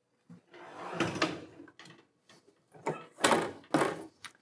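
Hotronix Fusion IQ heat press being closed: the loaded lower platen slides back in on its drawer rails with a rumbling scrape, then the upper heat platen is swung over and clamped down, with clicks and a loud clunk near the end.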